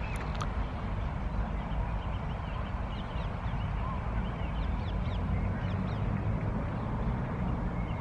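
Outdoor ambience: a steady low rumble with many short, thin bird calls, most of them in the middle few seconds.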